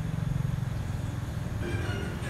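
A low, steady rumble with a fast pulsing to it. Music with held notes comes in near the end.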